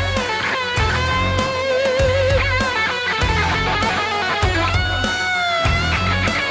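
Hard rock song's instrumental break: a lead electric guitar plays a solo full of string bends and vibrato over bass and drums.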